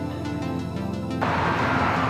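Background music; a bit over halfway through, a loud rushing noise of wind and road, picked up by the microphone of a rider on an electric scooter, comes in over it.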